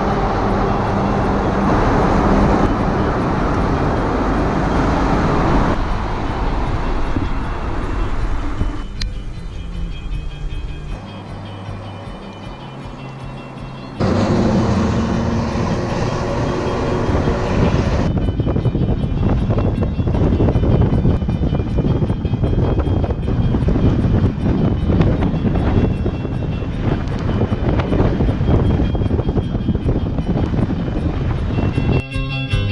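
Vehicle and road noise recorded from a moving recumbent trike, echoing in a road tunnel with a truck ahead at first, then out on the open highway. The sound changes abruptly several times, with a quieter stretch around the middle.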